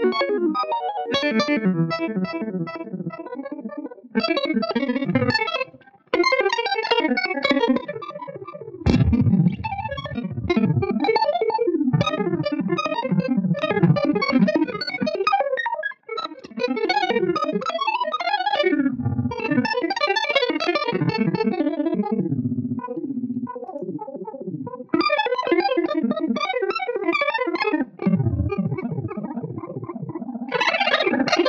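1959 Fender Jazzmaster electric guitar played through an EarthQuaker Devices Arpanoid arpeggiator pedal combined with an Electro-Harmonix Pulsar tremolo, turning the played notes into rapid stepping arpeggio runs. The runs are broken by a few brief pauses.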